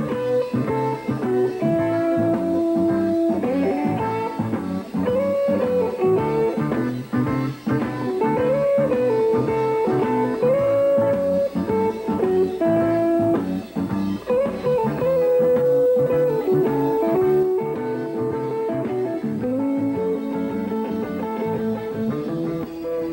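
Live rock band playing an instrumental passage: an electric guitar plays a lead line of held notes, some bent up and down in pitch, over drums and bass guitar.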